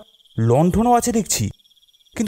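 Crickets chirping in a steady, fast-pulsed high trill, the night ambience of the scene. A man's voice speaks for about a second in the middle.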